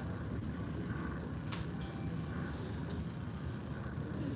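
Steady low rumble of a cruise ship's interior while the ship is under way, with a few faint clicks.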